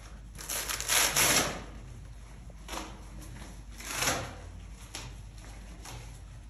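A fabric blood pressure cuff being handled and readied to wrap around an arm: one loud noisy burst of about a second near the start, then two shorter, fainter ones.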